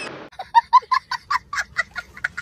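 A young child laughing: a quick run of short, high, honking laughs, about six or seven a second.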